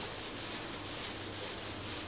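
Steady rubbing of a small hand-held pad against a painted plaster wall, an even scraping noise with no distinct strokes.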